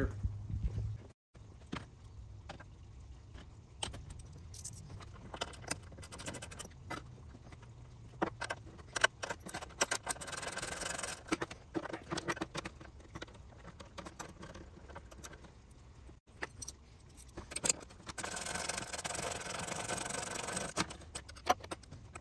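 Ratchet wrench with an 8 mm socket clicking in two long runs, about ten seconds in and again near the end, as bolts holding a plastic radiator cover are backed out. Scattered small metal clinks and taps from the tool and fasteners come between the runs.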